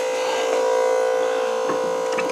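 Electric fuel pump running with a steady buzzing hum while filling an RC jet's fuel tanks. It is making noise, which the owner puts down to the tank it was feeding being full.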